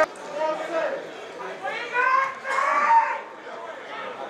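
Speech only: raised voices calling out, loudest in a stretch about two to three seconds in.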